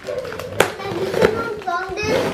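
A young child's voice making one drawn-out, wavering vocal sound, rising in pitch near the end, with a sharp click about half a second in.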